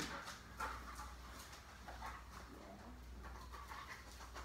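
Faint panting and light clicking from a dog searching across a tile floor.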